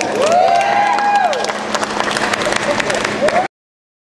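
Theatre audience clapping and cheering, with long shouted whoops rising and falling over the applause. The sound cuts off suddenly about three and a half seconds in.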